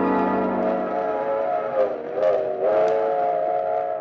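An organ chord from the show's musical bridge ends about a second in and gives way to a steam train whistle: a sustained chord of several notes that sags in pitch and recovers midway. It is a radio sound effect marking the train moving on to the next city.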